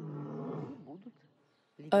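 A white lion roaring, a long low moan that fades out about a second in. Speech starts near the end.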